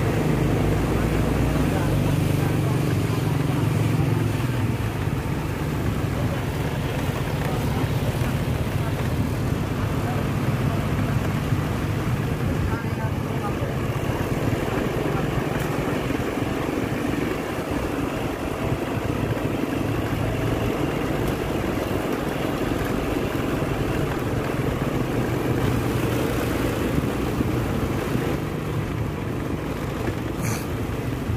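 Motor vehicle engine running steadily at low road speed, with a low, even hum and a rumble of road and tyre noise.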